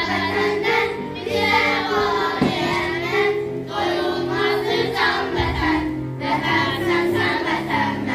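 A group of children singing together in unison over instrumental accompaniment.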